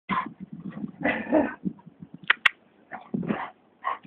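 Dogs barking in short, irregular bursts, with two sharp clicks a little past halfway.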